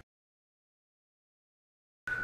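Dead silence: the audio drops out completely, cutting off suddenly and coming back just as suddenly.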